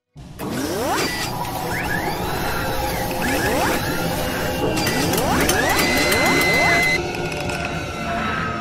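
Sound effects for an animated intro: dense mechanical whirring and clicking with several rising sweeps, over music. It starts abruptly and changes character about seven seconds in.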